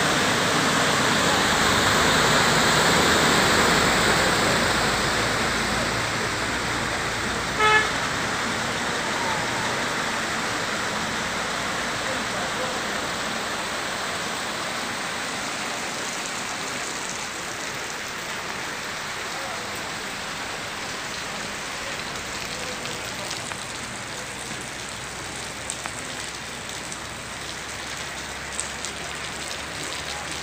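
Steady noise of heavy rain and muddy floodwater rushing across a street, loudest at first and slowly easing. A car horn toots once, briefly, about eight seconds in.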